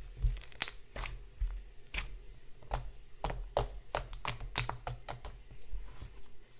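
Hands kneading and stretching slime, with irregular sharp pops and crackles, several a second, as it is squeezed and pulled.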